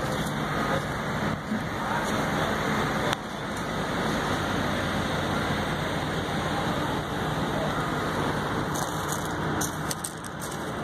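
Steady rumble of running machinery with a faint low hum, and one short click about three seconds in.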